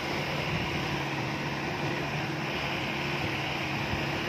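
An engine running steadily with a low, even hum under some rushing noise.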